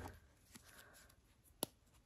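Faint handling of a small rolled paper slip being unrolled between fingers, with one sharp click about one and a half seconds in.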